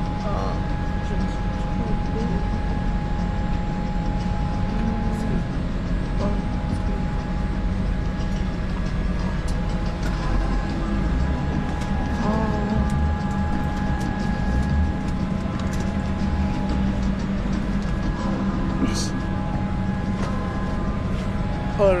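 Steady hum and whine of an airliner cabin's air-conditioning during boarding, with faint voices of other passengers.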